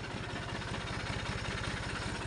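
Turbocharged Massey Ferguson 5245 DI three-cylinder diesel idling steadily, with an even, regular exhaust beat; the engine is still cold.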